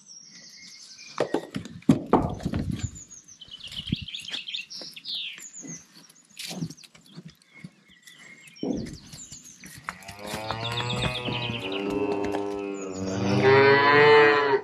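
Calf mooing: two long calls near the end, the second running into the next moment. Before them there are scattered high chirps and a few short knocks.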